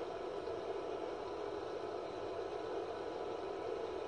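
Older Ecotec A3 pellet burner firing a wood boiler at near-full output: a steady, even running noise that does not change.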